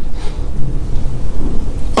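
A loud, low rumbling noise fills a pause between a man's sentences, with no words over it.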